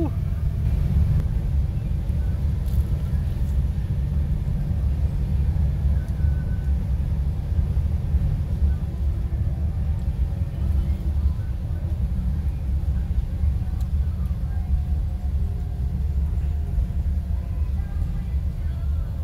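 Steady low rumble of a bus engine heard from inside the passenger cabin.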